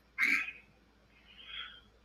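A short vocal sound from a person's voice on a telephone line, a brief murmur, followed by a fainter breathy sound about a second and a half in.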